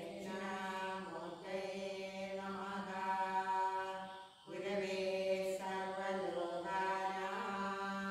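Vedic mantra chanting: a voice holding long, steady notes at nearly one pitch, with a short break for breath about four seconds in.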